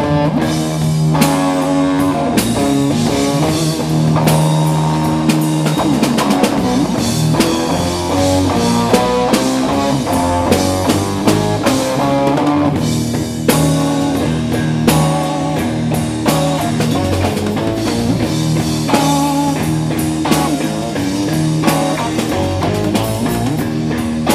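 Live rock band playing an instrumental stretch with no vocals: an electric guitar lead over a drum kit and bass. It is loud and continuous, with steady drum hits under a busy run of guitar notes.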